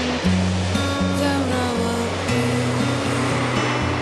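Background music with held bass notes and a slow melody that change pitch every half second or so, over a steady wash of sea surf.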